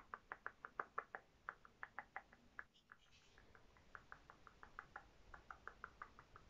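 Faint, quick fingertip taps and pats close to the microphone, about five or six a second with a short break near the middle, as moisturiser is patted on.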